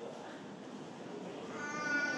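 A short, high-pitched cry in a voice starts about one and a half seconds in, over a low murmur of voices.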